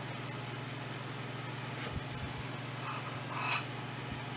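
Steady low background hum of kitchen room noise, with a few faint soft knocks about halfway through and two small, brief sounds near the end.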